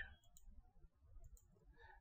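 Near silence, with a few faint clicks of a computer mouse button.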